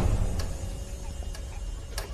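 Low steady background rumble with a few faint, irregularly spaced clicks.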